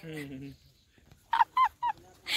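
A woman laughing: three short, high-pitched, falling bursts about a second and a half in, after a brief low voice at the start.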